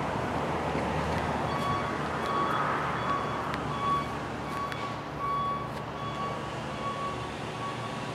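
Steady road-traffic noise, with a faint beep at one pitch repeating every half second or so from about a second and a half in: a vehicle's reversing alarm.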